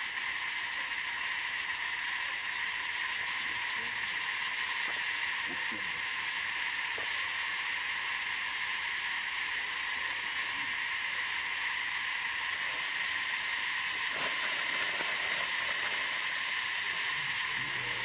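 Steady, unbroken drone of an insect chorus in the forest, holding the same high pitch bands throughout.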